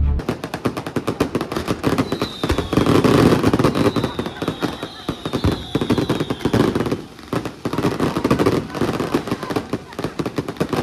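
Aerial fireworks going off in a rapid, continuous string of crackling bangs. A few faint falling whistles come through in the middle.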